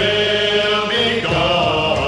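Male vocal group singing a gospel song in harmony, holding a long chord, then moving to a new chord just over a second in.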